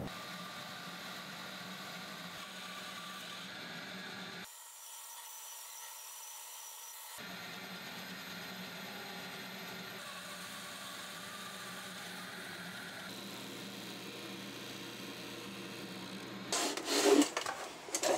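Band saw cutting a laminated 2x4 block along a glued-on paper template: a steady, quiet run of saw and blade in the wood with a low hum. The hum drops out for a few seconds about four seconds in, and a few louder knocks come near the end.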